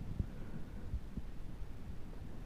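Low rumbling noise with irregular soft thumps, typical of wind buffeting and handling noise on the microphone of a camera moving down a ski slope.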